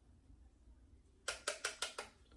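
About a second in, five quick light taps: a makeup brush knocked against a plastic eyeshadow palette to shake off excess powder before it goes on the eye.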